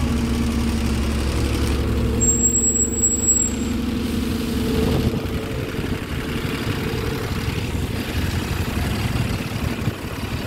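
Diesel engine of an Alexander Dennis Enviro400 double-decker bus running as the bus pulls away from the stop. The engine note is steady and louder in the first half, then eases as the bus moves off.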